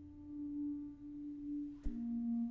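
Bass clarinet holding a soft, steady long note that swells and eases. Near the end a single marimba stroke sounds as the held pitch steps down to a new, lower long note.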